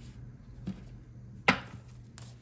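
A sharp tap on the tabletop about one and a half seconds in, with a softer tap a little before it, over a faint steady hum.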